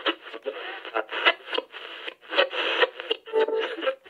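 People's voices laughing and chattering, thin and narrow-sounding as if heard through a phone or radio.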